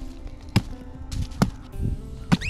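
Two sharp chops of a hatchet striking an old wooden railroad tie, a little under a second apart, over background music.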